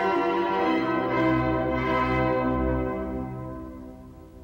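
Church bells ringing, several bells sounding together, then fading out over the last second or so.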